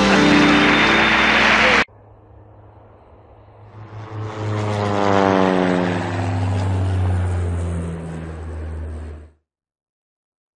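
A country band's music ends abruptly about two seconds in. Then a propeller-airplane sound effect fades in over a steady low hum, its pitch falling steadily as it passes, and cuts off shortly before the end.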